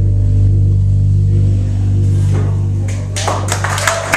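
A live band holds a sustained low chord that slowly fades, and audience clapping breaks out about three seconds in.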